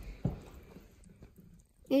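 A single light knock about a quarter second in: a Xiaomi pen-style TDS tester knocking against the side of a cup of sparkling mineral water as it is set in place.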